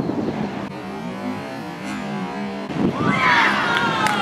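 Open-air ambience with a faint low hum, then about three seconds in several high-pitched voices break into loud shouting together, their pitch falling.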